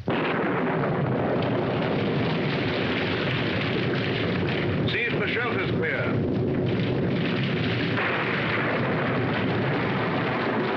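Heavy rain and wind of a storm: a loud, steady rush that starts abruptly. About five seconds in, a horse whinnies briefly over it.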